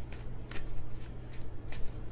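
A deck of tarot cards being shuffled by hand: a run of quick, crisp card flicks, about three or four a second.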